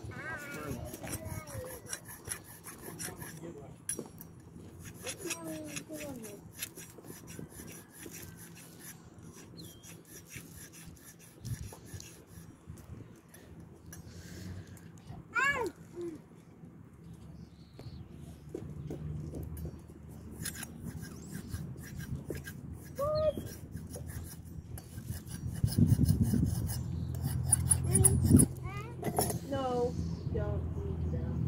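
Sharpening stone rubbed in runs of quick strokes along the edges of a steel sheep-shearing comb, taking the burrs off after grinding, with short pauses between runs.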